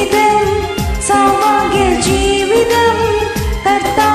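A woman singing a Malayalam Christian devotional song over a karaoke backing track with a steady beat.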